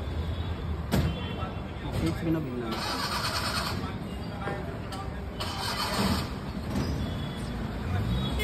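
Steady low rumble of road traffic with faint voices in the background. There is a sharp click about a second in, and two short hissing bursts of about a second each, near three and five and a half seconds in.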